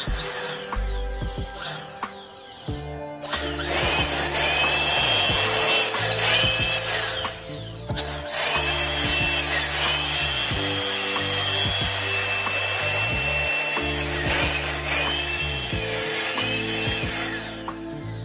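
Handheld electric blower running after its repair, a loud rush of air and motor noise that starts about three seconds in, stops briefly near the middle, then runs again until near the end. Background music plays underneath.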